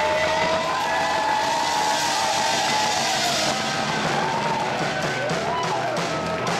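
Live band playing, with voices holding long, slowly sliding notes over a steady noisy wash of instruments and crowd.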